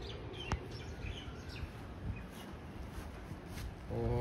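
Outdoor background with a steady low hum and a few faint bird chirps, plus a single sharp click about half a second in.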